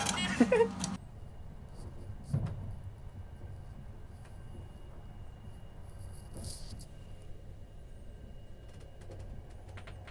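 Low steady rumble of a moving train heard from inside the carriage, with a faint thin tone over it and a few soft knocks, one about two seconds in. A short laugh and clatter fill the first second.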